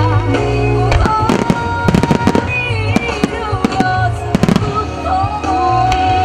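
Aerial fireworks bursting in sharp bangs, in clusters about a second in, about two seconds in and about four and a half seconds in, over loud accompanying music.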